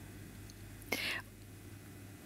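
A single short breath, a breathy puff about a second in, over a steady low room hum.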